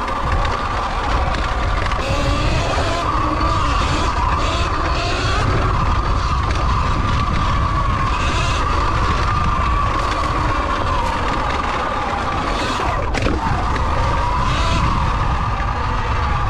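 Sur Ron electric dirt bike's motor whining steadily, its pitch wavering a little with speed, over wind buffeting the microphone and tyres on a dirt trail. One sharp knock sounds about three-quarters of the way through.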